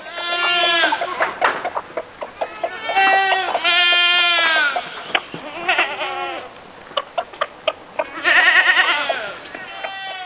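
Goats bleating: four long calls, the last one with a quavering pitch, with short clicks in the gaps between them.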